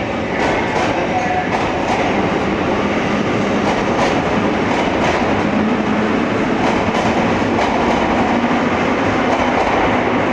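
Metro train running past along a station platform in an underground station: steady rumble of the cars with repeated wheel clacks over the rail joints.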